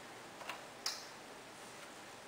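Two light clicks about half a second apart, the second sharper, as hands handle and shift a QNAP TS-459 Pro NAS enclosure on a wooden desk.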